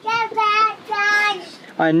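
A child's high voice in a sing-song, holding two or three drawn-out notes, with an adult man's voice starting near the end.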